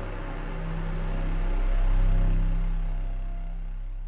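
Deep, steady bass drone from a dark cinematic soundtrack. It swells to its loudest about two seconds in, then eases off.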